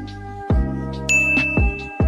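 Intro jingle music: sustained chords over two deep drum beats, with a bright bell-like ding about a second in that rings on.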